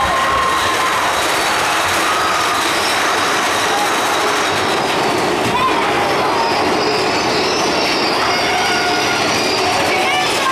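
Mine-train roller coaster running along its track through an enclosed cave: a loud, steady rush and rumble of the wheels on the rails, with riders' voices faintly heard in it.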